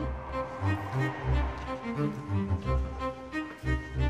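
Background music with sustained notes over a pulsing bass line.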